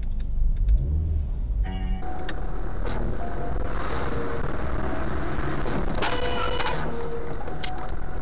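Steady road and engine noise of a moving car as picked up by a dash cam, with a few faint clicks. About six seconds in there is one short pitched blast, lasting under a second.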